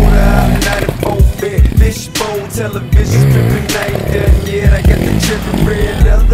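Hip hop music with a steady drum beat and long deep bass notes.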